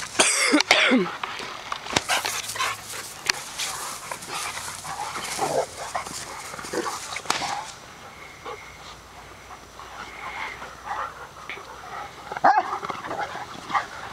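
Several dogs play-fighting: barks and play noises, with a loud cry sliding down in pitch near the start, scattered scuffles and bumps, and another loud outburst near the end.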